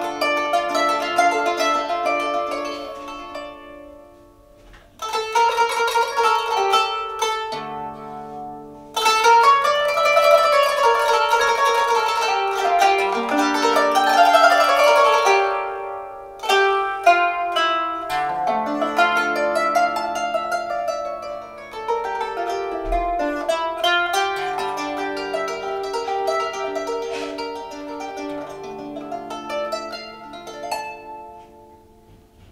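Qanun, the Arabic plucked zither, played with finger picks. It runs a flowing melodic passage of plucked notes and fast tremolos in phrases, easing off briefly about four seconds in. During the playing the player moves from a major to a minor maqam by flipping the levers that retune the strings.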